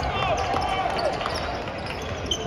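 Basketballs being dribbled on a hardwood court, with the chatter of many voices from the players and the crowd underneath.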